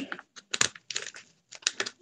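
Scattered short crinkles and clicks of a placemat being handled and pressed into a hat shape.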